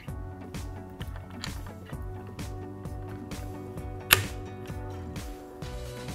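Small irregular clicks and ticks of a flathead screwdriver working loose the top screw of an air rifle's butt pad, with one sharper click about four seconds in, over steady background music.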